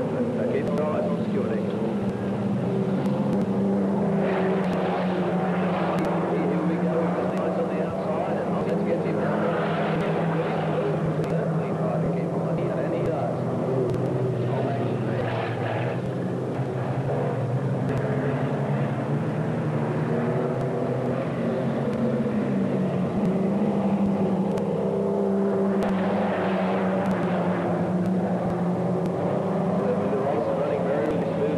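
Engines of several small saloon race cars running together in a steady drone as they lap the track, swelling a few times as cars pass.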